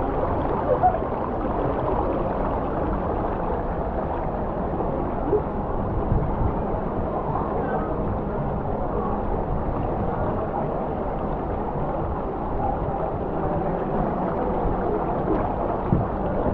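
Steady rush of water flowing down the start of a free-fall water slide.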